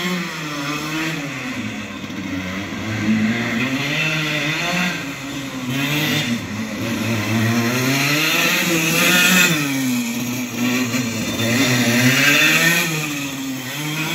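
Go-kart engine buzzing as the kart runs a cone slalom, its pitch rising and falling again and again every few seconds as the driver accelerates out of each turn and lifts off for the next.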